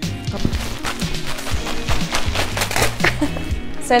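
A black compostable plant-based mailer bag being pulled and torn open, giving an irregular run of sharp crackles over background music.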